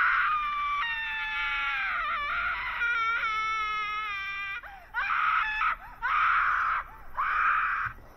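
A young woman's high-pitched excited screaming. One long scream with a wavering pitch lasts about four and a half seconds, then three shorter, breathier screams follow about a second apart.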